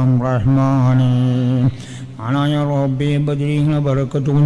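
A man chanting an Islamic supplication (dua) in a slow, melodic recitation, holding long steady notes. There are two drawn-out phrases, the second beginning about two seconds in.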